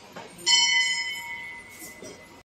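Hanging brass temple bell struck once about half a second in, ringing with several clear high tones that slowly fade away.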